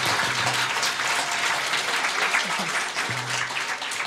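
Audience applauding at the close of a live song, with a low held note still sounding under the clapping at the start.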